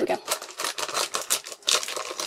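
Thick plastic packaging crinkling and crackling as it is cut and pulled open, in a quick irregular run of crackles.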